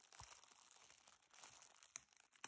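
Faint crinkling of a plastic ramen noodle packet being picked up and handled, with a couple of soft clicks.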